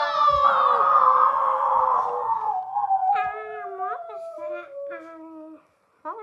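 A child's voice giving a long, loud wailing cry in play, slowly falling in pitch, followed by a few short vocal yelps over a trailing falling tone.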